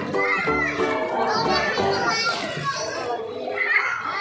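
Young children calling out and playing in a swimming pool, with high-pitched shouts about halfway through and again near the end, over background music.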